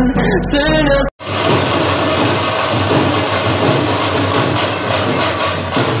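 A pop song with singing cuts off abruptly about a second in. It gives way to the dense, steady noise of a busy crowd, with voices chattering.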